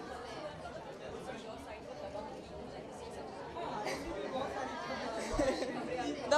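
Chatter of several people talking at once, growing louder in the second half.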